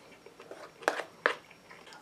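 A person eating, quiet chewing and handling of food. Two short, sharp sounds come about a third of a second apart, just under a second in.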